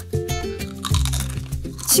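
Background music with a crisp crunch of a chip being bitten into near the end.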